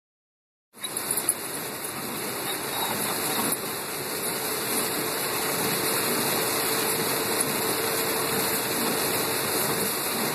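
Steady hiss of heavy rain on a car's roof and windshield, heard from inside the cabin, starting under a second in.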